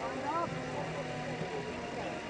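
Indistinct male voices, faint and wordless, over steady background noise from the pitch.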